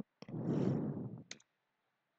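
Clicks from a computer keyboard and mouse: one right at the start, another just after, and a quick double click about a second later, with a soft rushing sound in between.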